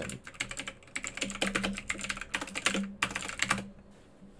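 Rapid keystrokes on a computer keyboard, a quick run of clicks typing a command that stops shortly before the end.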